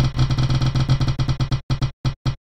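Prize-wheel spin sound effect: a rapid run of ticks, about a dozen a second, that start abruptly and slow down near the end as the wheel winds down.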